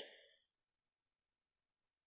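Near silence: the breathy tail of a woman's exhale after a word fades out in the first half second, then dead quiet.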